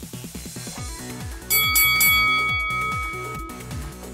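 Electronic dance music with a steady bass beat; about a second and a half in, a loud bell chime strikes and rings out, fading over about two seconds, as the exercise countdown timer runs out.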